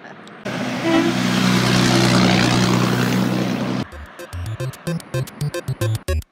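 A heavy truck driving past close by across a road bridge, its diesel engine running at a steady pitch under loud road noise. It starts suddenly about half a second in and cuts off just before four seconds in, where rhythmic background music begins.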